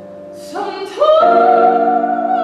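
Soprano singing the spiritual with grand piano accompaniment. After a soft held chord fades, her voice enters about half a second in and rises to a loud, sustained high note about a second in.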